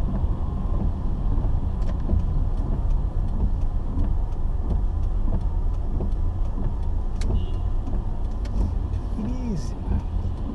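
Car cabin driving noise: a steady low rumble of engine and tyres on a wet road, with a few light clicks.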